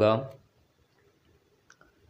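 The end of a man's spoken Malayalam prayer phrase, then a pause broken only by a couple of faint short clicks near the end.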